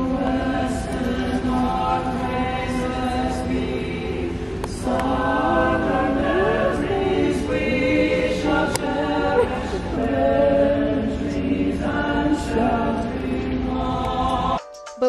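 A small mixed choir of men and women singing a cappella into one microphone, holding chords in long phrases, with brief pauses about five seconds in and again near twelve seconds, heard from the stands of a large arena.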